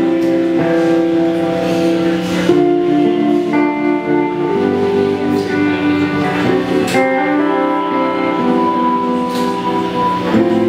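Live band playing an instrumental passage: sustained guitar chords that change every second or so, over drums with a couple of sharp cymbal strikes.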